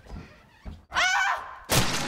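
Two light thuds, then a short high-pitched squeal whose pitch bends, and near the end a loud burst of harsh noise.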